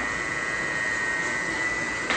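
Steady rushing machine noise with a faint, constant high whine.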